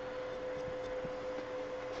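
Steady background hum with a faint even hiss: workshop room tone, with no distinct event.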